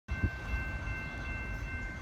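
Distant approaching Metra commuter train: a low rumble with a steady high-pitched ringing above it.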